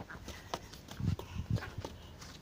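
Footsteps on a dirt path: a few soft, low thumps about half a second apart, with light scattered clicks.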